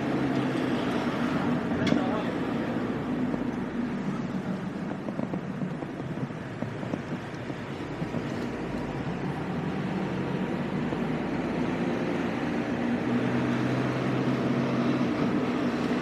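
Car engine hum and tyre-and-road noise heard from inside the cabin while driving slowly through town. The hum drifts a little in pitch, and there is a single click about two seconds in.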